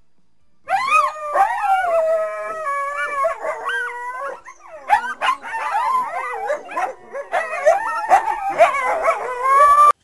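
A group of coyotes howling and yipping together, starting about a second in. Several voices overlap, with long gliding howls at first and then a tangle of short rising and falling yips.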